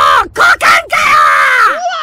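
A man's comedic scream of pain, a long drawn-out yell ending in 'the crotch?!' ('kokan ka yooo'), after a hit to the crotch. Near the end a second, higher cry rises in and wavers.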